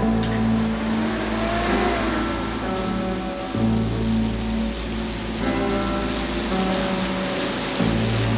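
A minibus driving along a wet road: engine running with the hiss of tyres on wet tarmac, mixed with soft background music.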